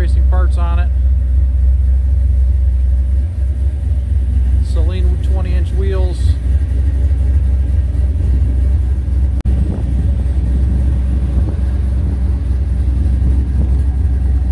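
2005 Ford Mustang GT's 4.6-litre V8 idling with a steady low rumble.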